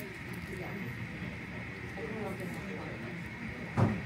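Restaurant room tone with a faint murmur of voices and a steady faint hum, broken by a single dull thump near the end.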